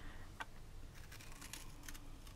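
Small scissors snipping grey cardstock: a few faint, short cuts.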